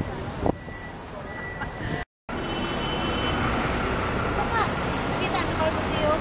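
Outdoor street ambience: a steady rumble of traffic with snatches of people's voices. The sound drops out completely for a moment about two seconds in, then returns louder.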